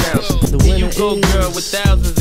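Hip hop track with a rapped vocal over a bass-heavy beat.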